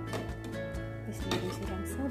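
A metal ladle stirring soup in a metal stockpot, knocking against the pot in a few sharp clinks, over steady background music.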